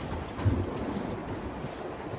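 Wind buffeting the microphone over steady water noise, with one low thump about half a second in.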